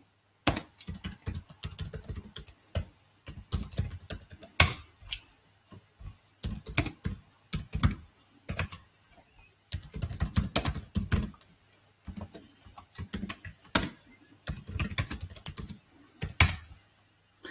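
Typing on a computer keyboard: runs of quick keystrokes separated by short pauses, as shell and SQL commands are entered.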